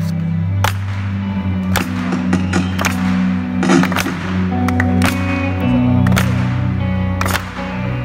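Live rock band playing an instrumental passage: electric guitar over sustained bass and keyboard chords, with a drum hit about once a second.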